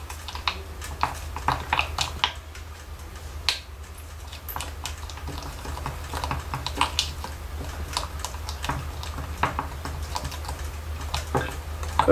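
A wooden stirring stick clicking and tapping against the sides of a glass measuring jug while stirring seeds into melted soap base, in irregular light taps several times a second.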